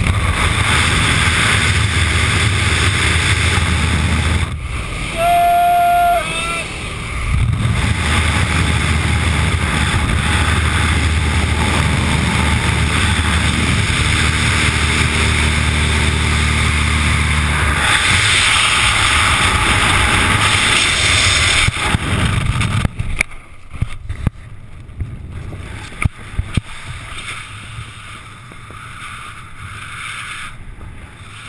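Light aircraft engine and slipstream noise through the open jump door, steady and loud, with a short high beep lasting about a second and a half about five seconds in. About 23 seconds in the engine noise cuts away as the parachutist leaves the aircraft, giving way to uneven wind buffeting on the microphone.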